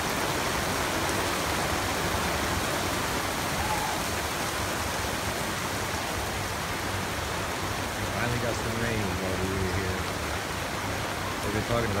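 Steady rain falling, a dense even hiss throughout, with voices talking in the second half.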